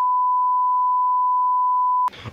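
Broadcast test tone, the kind played under colour bars: a single pure, steady beep held unbroken, signalling an off-air break for technical difficulties.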